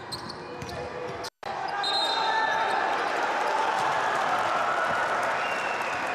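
Basketball game sound in an arena: a ball bouncing on the hardwood court, a few short high sneaker squeaks, and the voices of the crowd in the hall. The sound cuts out completely for a split second about a second in.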